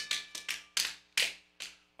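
A few scattered hand claps, about six, irregular and echoing in a near-empty hall, over a faint held music tone.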